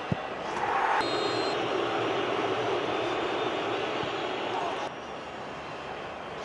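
A sharp thud right at the start, then a big stadium crowd roars in a loud cheer as an England penalty goes in. The cheer cuts off about five seconds in, leaving a lower steady crowd noise.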